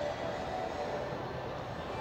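Steady background hubbub of an indoor shopping mall atrium: a continuous even wash of distant crowd and building noise.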